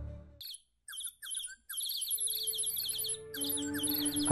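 Small songbirds chirping in quick, repeated high notes, starting about half a second in as a flute phrase ends. Soft sustained music tones come in underneath about halfway through.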